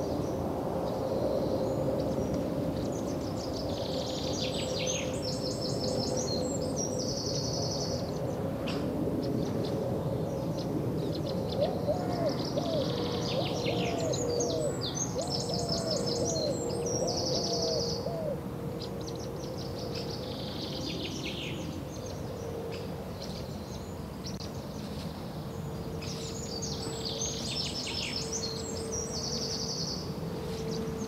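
Looped recording of birdsong, the same cluster of high chirping phrases coming round about every 11 to 12 seconds, with a run of about seven short low calls in the middle and a faint steady hum beneath. It is the birdsong track that stands in for the housemates' muted sound on a reality-show feed.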